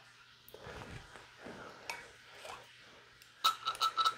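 Faint, soft handling sounds of a pipette being worked over a ceramic spot plate, then a cluster of quick clicks near the end.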